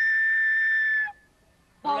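A small hand-held wind instrument blown on one long, steady high note that cuts off about a second in.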